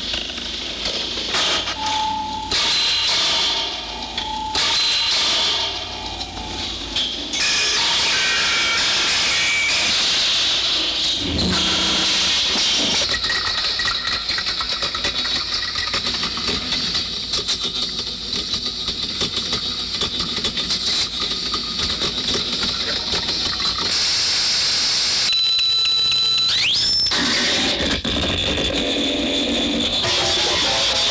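Harsh experimental noise music: a loud, dense hiss-like wall of noise that switches abruptly between textures several times, with a short rising whistle-like tone about 26 seconds in.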